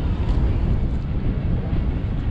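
Wind rushing over the microphone of a paraglider pilot's body-worn action camera in flight: a steady, low, rumbling rush of air with no break.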